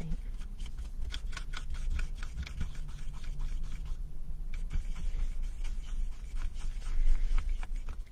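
Wooden coffee stirrer scraping and clicking against a plastic paint palette as paint is mixed, in quick repeated strokes with a brief pause about halfway through.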